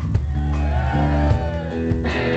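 Amplified electric guitar and bass playing slow held low notes, with a note bent up and back down about a second in, and no drums.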